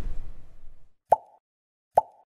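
Cartoon pop sound effects from an animated subscribe card: a low sound fades out over the first second, then come two short bubbly pops about a second apart, each with a brief tone, as the like and bell icons pop in.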